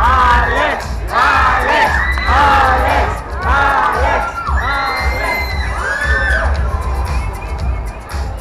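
A crowd of young fans screaming and cheering, many high voices overlapping in repeated rising-and-falling cries that thin out near the end, with a steady bass beat from music underneath.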